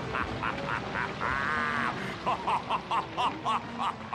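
A cartoon character laughing: a run of short 'ha' bursts, about four a second, broken about a second in by one long held note, then picking up again.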